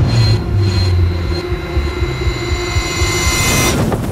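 Science-fiction trailer sound effect of a spacecraft in flight: a loud low rumble and rushing noise with high whining tones that build, then cut off suddenly just before the end.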